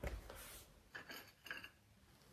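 Faint clinks and rubs of porcelain china being handled: a short sound at the start, then two more soft touches around the middle.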